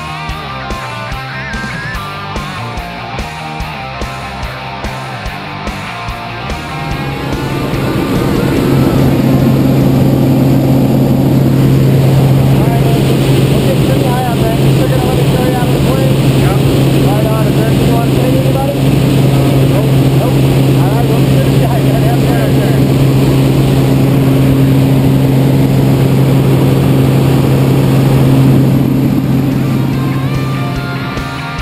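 Rock music for the first several seconds. Then a loud, steady drone of a single-engine high-wing plane's engine and propeller, heard inside the cabin, with faint raised voices over it.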